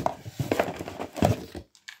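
Cardboard box and its packing being handled: a few sharp knocks and some rustling as the box is lifted and moved, dying away near the end.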